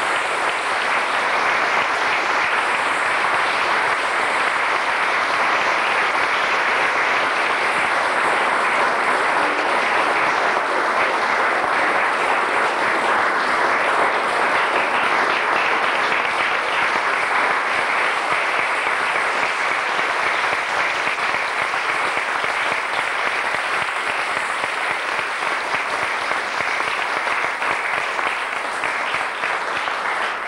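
Audience applauding steadily, thinning a little near the end.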